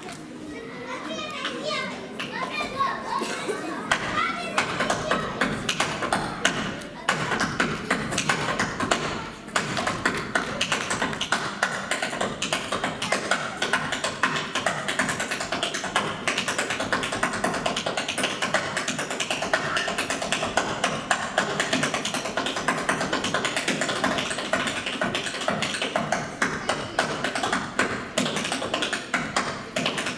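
Tap shoes striking a wooden stage board in fast, unaccompanied rhythm improvisation: dense runs of taps and stamps with no music behind them, broken briefly a little over nine seconds in.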